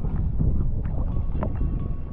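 A boat under way, a steady low rumble with wind buffeting the microphone.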